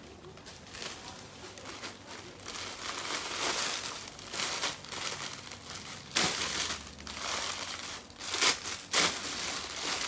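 Clear plastic garment bags crinkling and rustling as packaged clothes are handled and opened. There are sharper, louder crackles about six seconds in and twice near the end.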